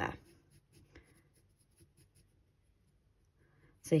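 Faint scratching of an HB graphite pencil drawing short, light strokes on drawing paper.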